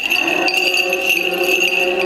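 Small bells jingling repeatedly, with a high ringing tone held throughout, over slow sustained liturgical music.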